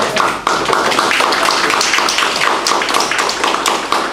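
Audience applauding: a dense, even run of many people's hand claps.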